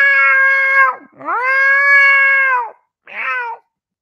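A man imitating a cat, meowing in a high voice: three drawn-out 'meow' calls, the last one shorter, stopping about three and a half seconds in.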